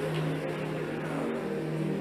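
Quiet background music: a steady held low chord over a faint hiss.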